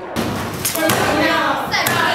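A classroom of teenage students chattering, laughing and shouting over one another, with a few sharp thumps among the voices.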